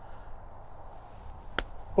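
A golf club striking the ball on a chip shot: one sharp click about a second and a half in.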